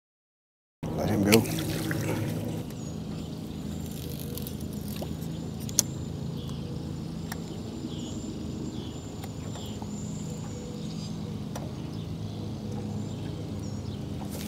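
Steady low hum of a bow-mounted electric trolling motor holding the boat in place, with a single sharp click about six seconds in.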